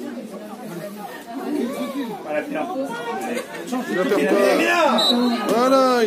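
Several voices calling out and talking over one another, growing louder about four seconds in.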